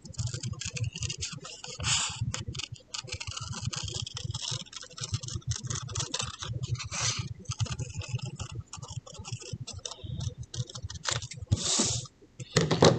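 Scissors snipping paper in many small, quick cuts, irregular and close together, as a small circle is cut out of the middle of a paper piece.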